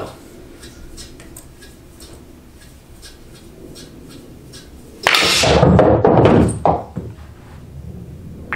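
A pool shot played with a draw stroke: a sharp cue-on-cue-ball strike about five seconds in, followed at once by a quick series of billiard balls clacking together and dropping into the pockets over about two seconds.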